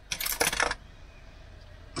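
A brief clinking rattle of small hard kitchen items being handled, a quick cluster of sharp clicks lasting about half a second near the start.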